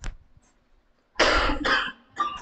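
A person coughing: two hard coughs close together, a little over a second in.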